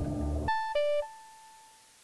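A three-note electronic chime, high, lower, high, with the last note ringing out and fading over about a second, after a music sting dies away at the start.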